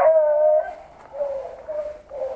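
Beagle hounds baying while hunting rabbit: one long, steady bay at the start, then a fainter, shorter bay about a second in.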